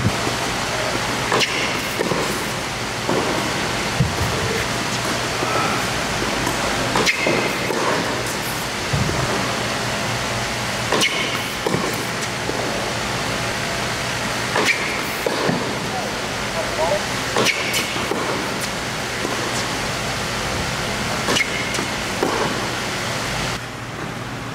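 Tennis ball being hit back and forth on an indoor hard court: sharp racket strikes and ball bounces every few seconds, echoing in the hall over a steady background hiss.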